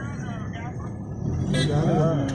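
Steady low drone of a car being driven, heard from inside the cabin, with people talking over it. There is a brief sharp sound about one and a half seconds in.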